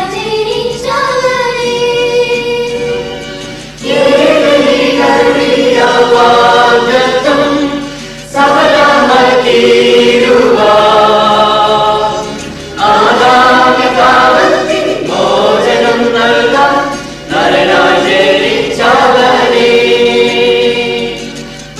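A church choir of children and adults singing a Malayalam Christmas carol in phrases about four seconds long, with short breaks between them. A steady low hum runs underneath.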